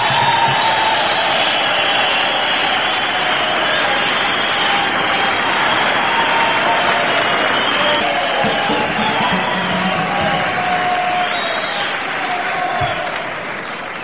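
Concert audience applauding and cheering at the end of a live song. The noise is steady and loud, with voices shouting through it, and eases off slightly near the end.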